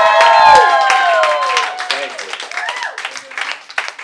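Audience clapping with several voices whooping and cheering over it. The cheers are loudest in the first second and a half, then the clapping carries on and thins out toward the end.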